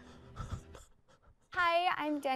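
A couple of soft low thumps, then a short near-silent gap, then a young woman starts speaking about three-quarters of the way in.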